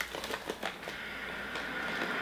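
A few faint clicks, then a steady low hiss that sets in about a second in.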